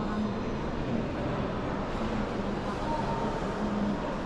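Railway station concourse ambience: a steady background noise with faint, indistinct voices of people in the hall.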